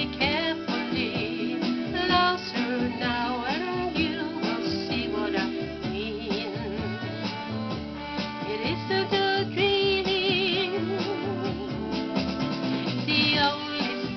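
A woman singing a 1960s pop ballad over a backing track with guitar, her held notes wavering with vibrato about two-thirds of the way in.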